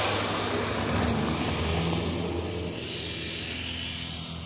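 Road traffic on a hillside street: a motor vehicle's engine hum and tyre noise over the general traffic, easing off a little after about two seconds.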